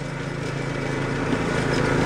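Riding lawn mower's engine running with a steady hum that grows gradually louder as the mower approaches.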